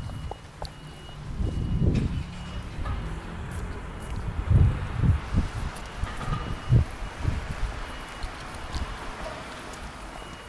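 Gusts of wind rumbling on a handheld camera's microphone, in irregular low bursts over faint outdoor street noise.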